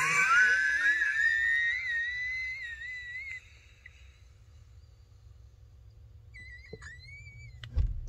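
A man's suppressed laughter coming out as a long, high-pitched, wavering wheeze that rises in pitch for about three seconds. After a silent pause, a second shorter wheeze follows, then a low thump near the end.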